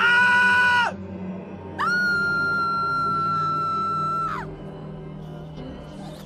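Two high-pitched screams, a short one at the start and then a longer one held at one pitch for about two and a half seconds, over a low steady music drone.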